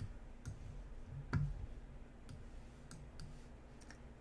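About six short, sharp computer clicks at irregular spacing, the loudest about one and a half seconds in, over faint room hum.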